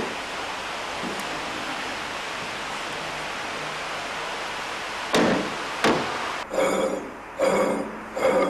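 A steady, even hiss, broken about five seconds in by two sharp knocks less than a second apart, then a few short pitched sounds near the end.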